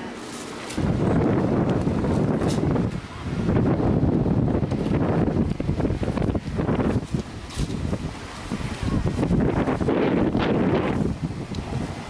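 Wind buffeting the camcorder microphone: a low, loud rumble that starts about a second in and comes and goes in gusts.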